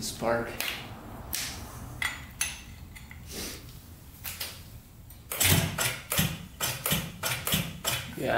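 Scattered clicks as a spark plug and its cap are handled, then from about five seconds in a regular run of sharp snaps, about three a second, as the 1971 Yamaha CS200 two-stroke is turned over with a plug grounded against the cylinder for a spark check. The plug is sparking.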